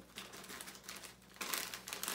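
Plastic snack bag crinkling as it is tipped and shaken over a hand, made of many light, rapid clicks, a little louder about one and a half seconds in.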